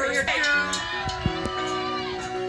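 A live rock band holds a sustained chord while a voice calls out in one long, drawn-out note that slides slowly downward.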